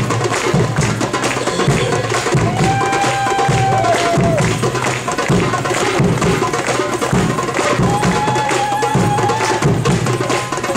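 Middle Eastern hand drums, goblet drums among them, playing a quick, steady dance rhythm. A long high note is held over the drumming twice; the first one slides down at its end.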